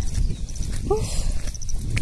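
Wind buffeting the phone's microphone, a steady low rumble, with a brief hum-like vocal sound about a second in.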